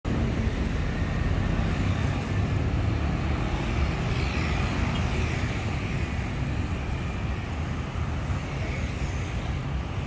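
Steady road traffic: cars and motorcycles passing on a busy city street, a continuous low rumble of engines and tyres.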